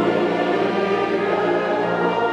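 A men's choir and wind band performing a Christmas hymn together, held chords at a steady loud level, with the standing audience singing along.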